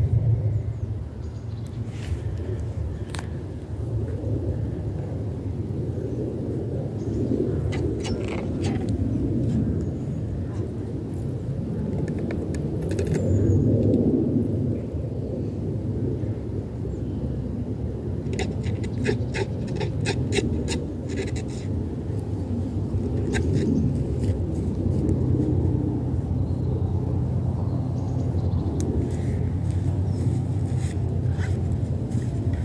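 Wind buffeting an outdoor microphone as a steady low rumble, with scattered light clicks and rustles and a quick run of clicks about two-thirds of the way through.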